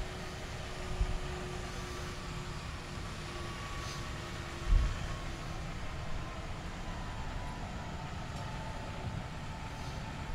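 Guzzler Classic vacuum truck running steadily as its body is hydraulically raised for a high dump, with faint tones that drift slowly lower in pitch. Two low thumps come about a second and about five seconds in.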